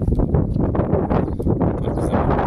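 Wind buffeting the camera's microphone: a loud, continuous rumbling roar.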